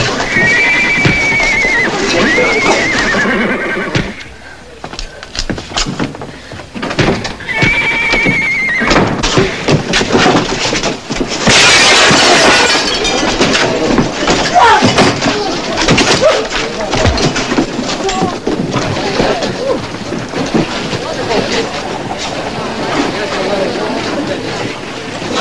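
A horse whinnies twice, once near the start and again about eight seconds in, over a shouting crowd and the thuds and scuffles of a fistfight. A loud crash of noise comes about halfway through.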